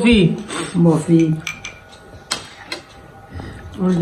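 A metal spoon clicking against crockery, two sharp clicks a little past the middle, after brief voices at the start.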